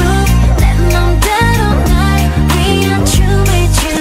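Electric bass, a Sterling StingRay short-scale, played along with a pop/R&B song track: sustained low bass notes changing every half second or so under a sung melody and a steady beat.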